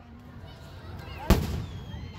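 Aerial firework shell exploding with one sharp, loud bang a little past halfway, followed by a brief trailing rumble.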